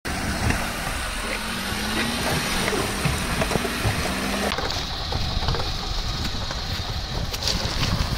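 Water rushing and splashing around a Maruti Suzuki Alto hatchback driving through a shallow, stony river ford, with the car's engine running. The sound changes abruptly about four and a half seconds in.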